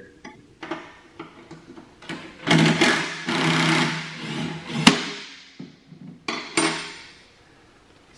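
Cordless Makita 18V impact driver running a nut off a mower's belt-tensioner bolt: one run of about two seconds, then two short bursts near the end, with a few clicks of the socket and wrench between.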